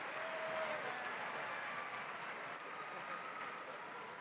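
Large indoor audience applauding, with scattered cheers and voices in the crowd; the applause slowly fades.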